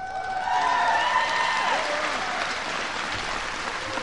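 A large audience of troops applauding, with a few voices cheering in the first couple of seconds. The applause eases off slowly toward the end.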